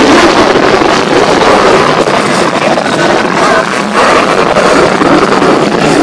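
Lockheed Martin F-35A Lightning II's jet engine at high power as it climbs straight up, a loud, steady rushing noise, with music playing underneath.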